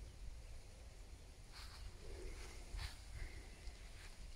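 Faint outdoor background: a steady low rumble with a few soft scuffs, and a brief faint high chirp near the end.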